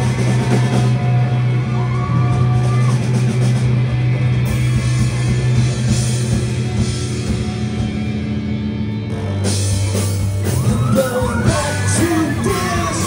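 Live rock band playing loud in a small club: electric bass, electric guitars and drums. A sung vocal line is heard in the first few seconds and comes back near the end.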